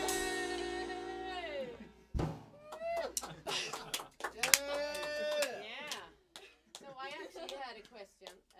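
A jazz band's final held chord and long note die away, the note falling in pitch about two seconds in, followed by a single sharp knock. Then voices talk and call out after the song.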